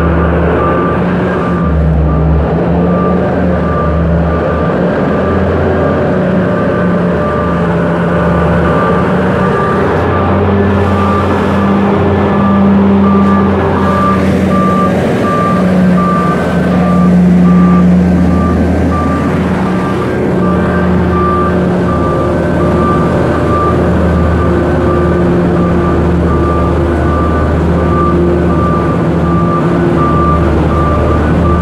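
Heavy vehicle engine running loudly in an underground mine tunnel, with its reversing alarm beeping repeatedly at an even pace throughout. The engine note rises and swells about halfway through.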